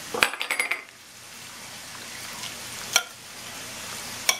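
A quick run of clinks with a short ring, kitchenware against a casserole dish, then a steady soft sizzle of hamburger and onion browning in a frying pan, with one sharp click near the end.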